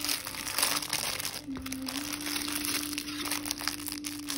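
Clear plastic packaging bags crinkling as they are handled: a continuous irregular rustle of many small crackles.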